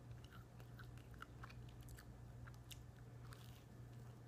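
A person chewing a mouthful of toast: faint, irregular crisp crunches, over a steady low hum.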